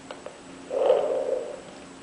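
A short, rough, buzzing vocal sound lasting just under a second, distorted by a Darth Vader voice-changing helmet, after a couple of faint clicks.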